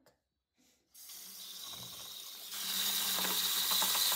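Kitchen or bathroom tap running into a sink over a pile of markers, starting about a second in and getting louder partway through.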